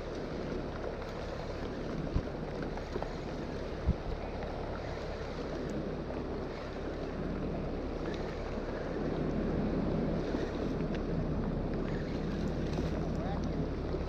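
Wind on the microphone and water around a small boat, over the low steady hum of the boat's idling motor, with two light knocks in the first few seconds.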